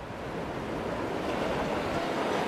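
Sea surf and wind: a steady rushing wash of waves that swells up over the first second.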